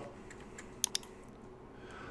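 A single click of a computer mouse button, heard as a sharp press and release about a tenth of a second apart, a little under a second in, over faint room tone.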